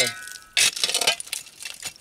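Hand digging tool chopping and scraping into dirt packed with broken glass and trash, with a sharp clink about half a second in and a few lighter clinks and scrapes after.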